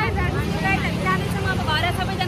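Several women's voices talking close to the microphone on a busy street, over a steady low rumble.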